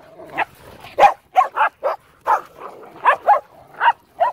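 Dogs barking in play: about ten short, sharp barks, some coming in quick pairs.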